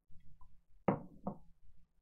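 Two short knocks about half a second apart.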